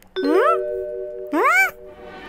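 Cartoon sound effects: a bell-like ding rings on steadily while two short vocal swoops, each rising then falling in pitch, come from the animated kitten character, like a surprised "hm?".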